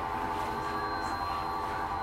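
A steady drone of several held tones, unchanging and with no speech over it.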